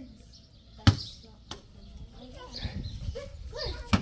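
Faint voices in the background, with a sharp click or knock about a second in, a smaller one shortly after, and another near the end.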